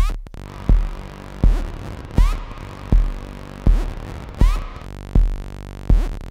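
Eurorack modular synthesizer patch playing a sequenced pattern: a low kick-like thump about every three-quarters of a second, with a short rising zap on every third beat over steady held tones. The sequence and effects are triggered off a clock divider.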